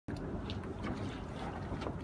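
Harbour-side wind on the microphone: a steady low rumble, with a few faint ticks and knocks in it.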